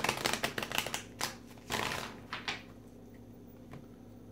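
Tarot cards being shuffled and handled on a table: a fast run of flicking clicks for about a second, then a few separate snaps and a short sliding rustle as cards are laid down.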